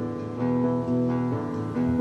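Acoustic guitar playing a slow accompaniment, its notes changing every half second or so.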